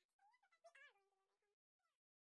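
Near silence with faint, high-pitched, meow-like vocal calls that slide up and down in pitch. They stop about one and a half seconds in, with one brief call near the end.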